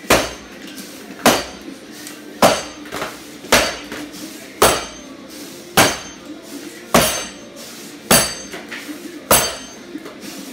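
A hardwood training axe chopping into a standing block of tulip poplar, striking about once a second. There are nine sharp chops in a steady rhythm, each followed by a short ring.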